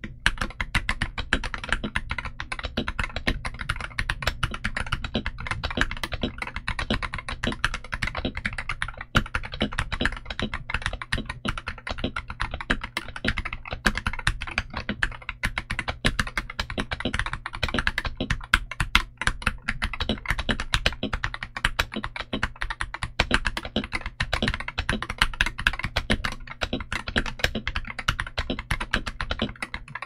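Keydous NJ68 magnetic Hall effect keyboard, in stock form with Outemu Magnetic Pink switches, a brass plate and shine-through ABS OEM keycaps, being typed on continuously at a fast, even pace: a dense stream of keystroke clacks, several a second.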